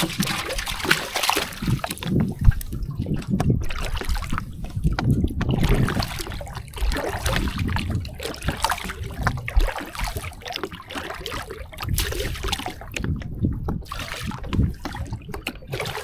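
Water trickling and splashing off a wet gill net as it is hauled hand over hand out of the river into a small boat, in uneven surges.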